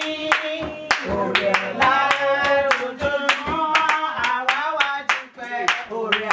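Women singing a praise song while clapping their hands in a steady rhythm, the claps sharp and regular under the singing.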